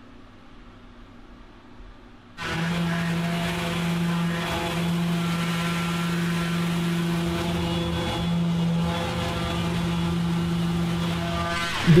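Mirka random orbital sander with an Abranet mesh disc running on a solid hickory slab. A faint low hum gives way about two and a half seconds in to the sander's loud, steady motor hum under the hiss of abrasive on wood.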